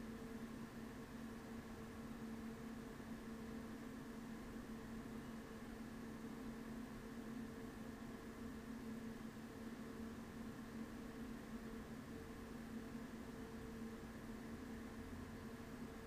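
Faint steady hiss with a constant low hum that never changes: background noise of the recording setup.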